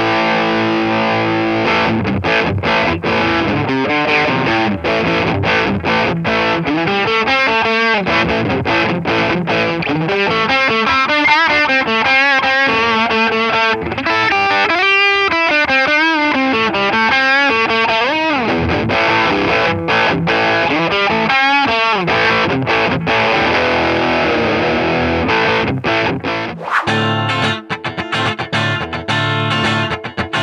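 Fender Player II Stratocaster electric guitar with three single-coil pickups, played through an amp with overdrive. It plays lead lines with wavering vibrato on held notes in the middle. Near the end the tone changes to a fuller, lower sound.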